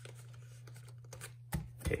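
Faint handling of plastic binder sleeves and photocards, with one sharp tap about one and a half seconds in, followed by a spoken "okay".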